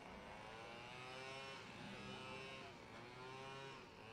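Drag racing car's engine revving up and down in about three long swells over a steady low running note, heard faint and distant.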